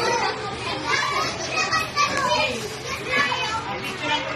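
A group of first-grade children talking and calling out all at once, their high voices overlapping into a steady classroom din.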